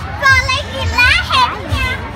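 A young child's high-pitched excited cries, three short ones with sliding pitch.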